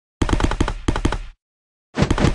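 Cartoon running-footsteps sound effect: a rapid patter of taps, about a dozen a second, in two bursts, the first about a second long and the second starting near the end.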